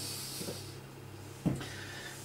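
Quiet kitchen room tone with a steady low hum, a faint click about half a second in and a sharper knock about a second and a half in, as things on the counter are handled.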